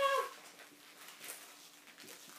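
A child's high-pitched, wavering vocal squeal that cuts off about a quarter second in, followed by faint light taps and movement.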